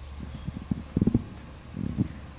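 Low thumps and rumble from a microphone being handled, clustered about a second in, over a steady low hum.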